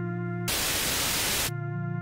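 An organ plays held chords, cut about half a second in by a burst of loud static hiss lasting about a second that drowns it out, before the chords return.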